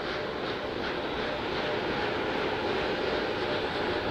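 Steady rushing noise from the fuelled Space Launch System rocket standing on the launch pad, with a faint steady tone running through it.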